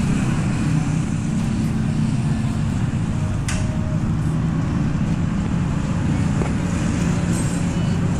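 Steady roadside traffic noise with a continuous low engine hum, and a single sharp click about three and a half seconds in.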